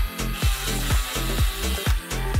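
Handheld rotary tool running as its thin bit drills through a wooden popsicle stick, over background music with a steady beat.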